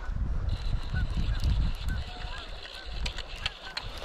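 Repeated short honking bird calls, with a low wind rumble on the microphone.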